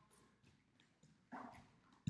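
Near silence, broken about a second and a half in by one short, faint vocal sound from the man exercising.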